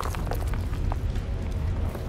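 Cartoon earthquake sound effect: a deep, continuous low rumble, with a few small knocks of pebbles falling.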